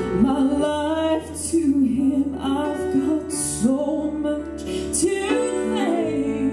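Southern gospel song performed live: a woman singing with grand piano accompaniment.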